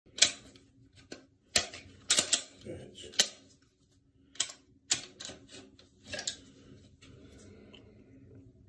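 Glock pistol being handled and field-stripped: a dozen or so sharp metallic clicks and clacks at irregular intervals as the slide is worked and taken off the frame, the loudest in the first three and a half seconds, fading out after about six and a half seconds.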